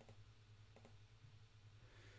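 Near silence: room tone with a few faint computer mouse clicks, two close together a little before the middle.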